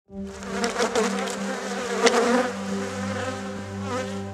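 A cluster of honeybees buzzing: a steady hum that swells louder a few times as bees pass close.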